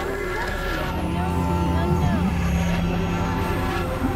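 Experimental electronic drone music: low synthesizer drones layered with higher held tones. Short gliding tones bend up and down over them.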